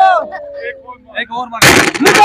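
Men shouting excitedly, with a sudden loud crack about one and a half seconds in as a hammer strikes the clay pot (matka) again, breaking it further.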